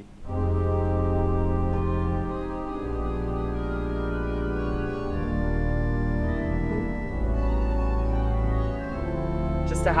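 Pipe organ playing slow sustained chords, a cor anglais reed stop on the solo manual carrying the melody over a soft string accompaniment, with flute stops in the pedals sounding bass notes that change every two to three seconds.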